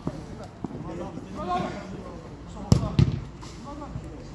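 A football being kicked and struck on artificial turf: two sharp, loud thumps of the ball about a third of a second apart near the end, a fainter thump earlier, over distant shouting of players.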